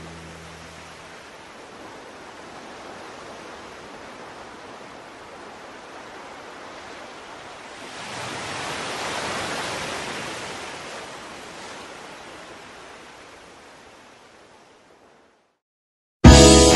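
Open-sea waves and wind rushing steadily. The sound swells about halfway through, then fades away near the end.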